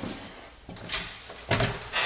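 Footsteps going down hardwood stairs: a few dull thumps, louder near the end.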